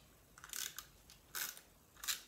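Cardstock being handled on a cutting mat: two short papery brushes and rustles as the sheet is slid and repositioned.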